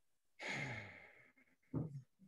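A person sighing while pausing to think: a breath out about half a second in, with a low voiced tone that falls and trails off, then a short voiced sound near the end.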